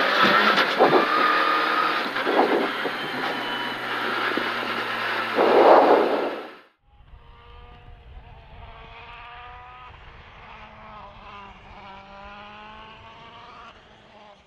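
Skoda Fabia R5 rally car's 1.6-litre turbo four-cylinder and road noise heard from inside the cabin at speed, with a louder burst about six seconds in. The sound cuts off abruptly about seven seconds in and gives way to a fainter rally car engine revving, its pitch climbing through the gears again and again.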